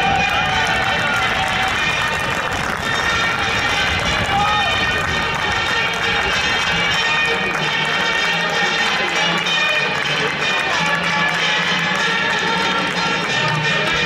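Steady stadium crowd noise, many voices mixed together with chanting, with music playing under it.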